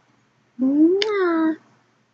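A woman's voice making one drawn-out, meow-like sound, about a second long, that rises and then falls in pitch, with a short smack partway through.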